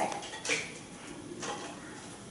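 Faint handling sounds of a lanyard being wound around a plastic ID card holder, with two light clicks, one about half a second in and one near a second and a half.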